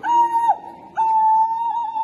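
A whistle blown hard: one short blast, then a long held blast that starts to warble near the end.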